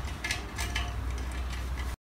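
Faint, irregular small metal clicks and scrapes as a screwdriver turns a heated-bed mounting screw down into a wing nut held underneath, over a steady low hum. The sound cuts off suddenly near the end.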